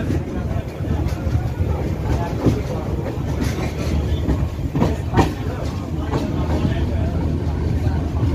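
Passenger train coach running at speed, heard from an open sleeper-coach window: a steady rumble of wheels on rails, with a few sharp clacks as the wheels cross track joints, the loudest just past halfway.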